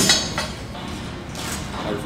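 Metal clanks and clinks from a cable machine's weight stack and handle as the set ends and the weight comes to rest: a few sharp hits, the loudest at the very start, against the hum of a busy gym with voices.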